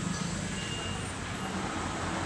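Steady low engine hum of a vehicle running, with a few faint thin high tones above it.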